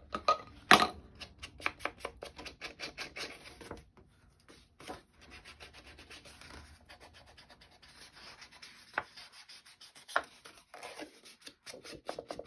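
Ink blending tool rubbed in quick strokes along the edges of a cardstock panel, a soft scratchy rubbing, with a sharp click less than a second in.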